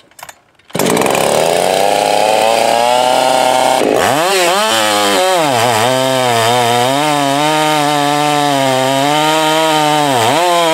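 Husqvarna 385XP two-stroke chainsaw, run without a base gasket and with a gutted muffler, running at high revs. About four seconds in, the pitch drops sharply and then wavers lower as the bar goes into the log and the engine bogs under cutting load.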